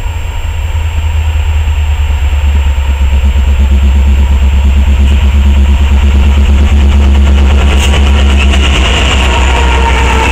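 Diesel-electric freight locomotives approaching and passing, a heavy, pulsing low engine rumble that builds over the first few seconds and stays loud as the lead units go by near the end.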